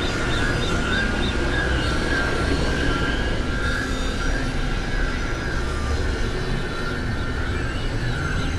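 Experimental synthesizer noise music: a dense, steady drone with a heavy low rumble and a few faint high tones held over it.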